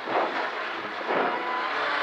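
Ford Escort Mk2 rally car heard from inside the cabin, its engine running hard as it takes a square right-hand turn, with the revs climbing in the second half as it pulls away.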